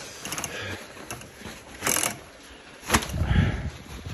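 Handling noises of things being moved while rummaging in a shed: a short rustle about halfway through, a sharp knock about a second later, then a low rumble of shifting objects.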